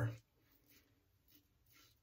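Faint scraping strokes of a double-edge safety razor with a Shark blade cutting stubble through lather, about three short strokes half a second apart, on the first pass with the grain.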